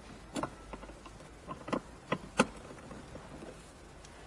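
Phillips screwdriver undoing the radio's hidden silver mounting screws: a handful of short, sharp clicks and taps of metal on screw and plastic trim, the loudest a little past halfway.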